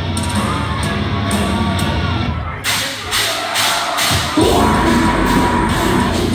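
Live metal band starting a song in a concert hall with the crowd cheering and shouting. A sustained guitar and bass drone with regular hits cuts out about two and a half seconds in, leaving crowd noise, and the full band comes back in about four and a half seconds in.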